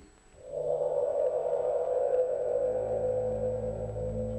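Ambient background music of sustained droning tones, swelling in about half a second in, with a lower drone joining about halfway through.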